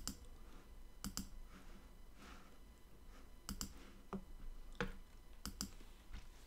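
Computer mouse clicks: a series of faint clicks, several in quick pairs, as word tiles are selected one after another.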